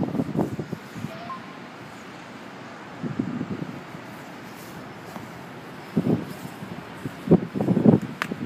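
Steady city background from a high rooftop: a distant traffic hum with light wind, broken by a few short louder sounds about three, six and seven seconds in.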